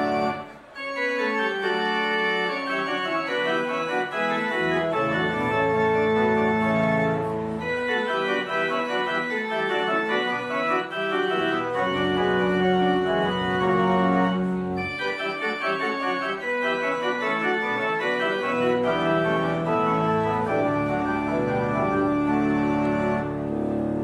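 Organ music: sustained chords that move from one to the next every second or so, with a brief break in the sound under a second in.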